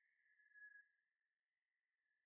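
Near silence, with only a faint high tone fading out within the first second.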